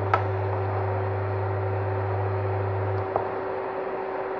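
Electric cooktop under a saucepan giving off a steady low electrical hum that cuts off about three seconds in, with a steady higher whine running alongside. A metal spoon stirring the thickening coconut-milk batter clicks against the pan once or twice.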